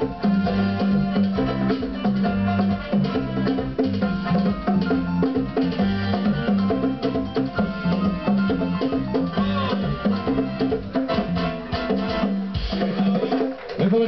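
Live band playing up-tempo music, with a pair of hand drums struck by hand over keyboard and a steady bass line; the music stops shortly before the end.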